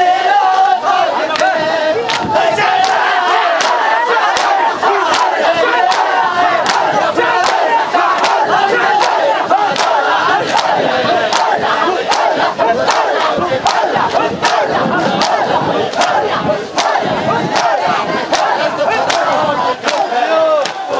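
A large crowd of men shouting together in matam, with rhythmic sharp slaps about twice a second from open hands striking bare chests.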